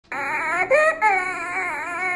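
Infant crying in loud, high-pitched wails, broken twice by short breaths in that carry a whistling inspiratory stridor, typical of laryngomalacia.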